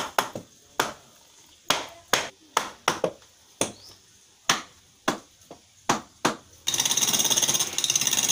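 Sharp, irregular knocks, about two a second, then from near the end a loud, dense, rapidly rattling power-tool noise in a wood-turning workshop.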